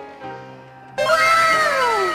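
A single long, animal-like call that falls steadily in pitch, starting suddenly about a second in, over steady background music.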